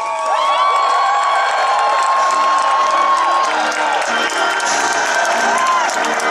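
A large outdoor crowd cheering and whooping, with many long rising-and-falling whoops, some clapping and music underneath.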